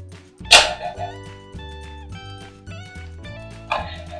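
Electronic sound effects from an Ultraman R/B Rube Gyro transformation toy as a Rube crystal is set in it. There is a sharp, loud burst about half a second in, then a run of stepped electronic tones, and another noisy burst near the end, all over background music.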